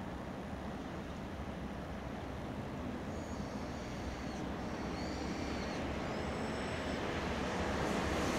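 Steady outdoor rumble and hiss of distant road traffic, slowly growing louder toward the end. From about three seconds in, several short, thin, high whistles sound over it.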